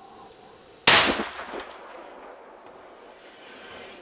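One loud, sharp crack about a second in, dying away over about half a second: a bow shot loosed at a sika buck feeding at a game feeder. A low steady outdoor hiss runs under it.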